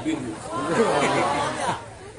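Several people's voices overlapping at once, a short burst of group chatter from the audience that dies away near the end.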